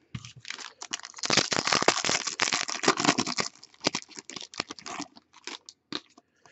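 A foil trading-card pack being torn open and its wrapper crinkled, densest for a couple of seconds starting about a second in, then lighter rustles and clicks as the cards are handled.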